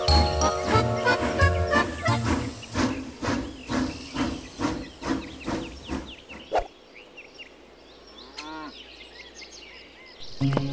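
Cartoon background music for about two seconds, then a cartoon toy train chugging in an even rhythm of about two and a half beats a second, fading away. Near the end a single click and a short sliding cartoon sound effect.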